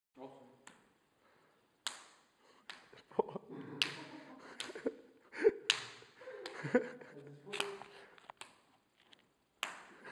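Hand-slapping game: one player's hand smacks the other's outstretched hand and fingers, skin on skin, about a dozen sharp slaps at uneven intervals. Low voices murmur between the slaps.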